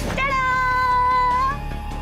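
A woman's long, high-pitched excited squeal, held for about a second and a half and rising slightly at the end.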